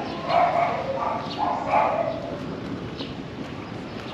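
A dog barking a few times in the first half, short barks.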